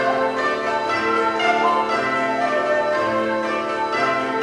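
Koto ensemble playing: plucked strings ringing out in overlapping, bell-like notes.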